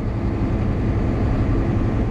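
Volvo 780 semi truck cruising at highway speed, heard inside the cab: the steady drone of its Cummins ISX diesel engine with road noise.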